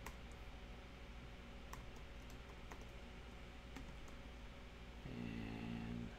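Typing on a computer keyboard: a handful of faint, scattered keystrokes with pauses between them. Near the end there is a short low hum, about a second long.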